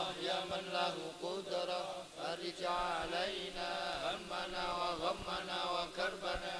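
A gathering of men chanting prayers together, soft and continuous, with many voices overlapping.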